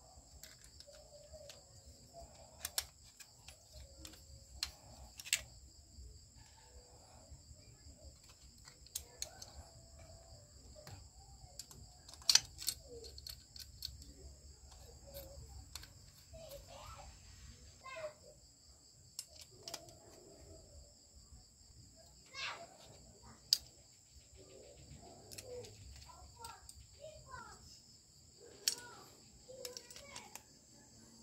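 Scattered sharp metallic clicks and taps of a screwdriver and the aluminium heatsink as screws are driven into a projector's DMD chip assembly, loudest about twelve seconds in. A steady high-pitched trill carries on in the background.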